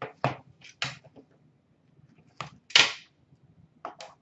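Cardboard trading-card boxes being handled and opened: a handful of short scrapes and rustles, the loudest a little under three seconds in.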